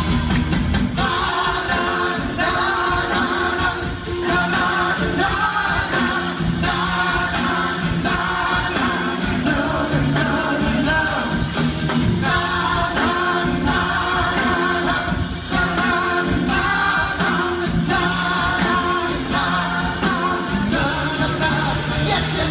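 Live rock band playing loudly with a wordless sung refrain, heard from within the audience in the hall.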